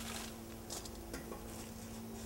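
A few light metallic clicks and clinks, scattered and irregular, over a steady low hum.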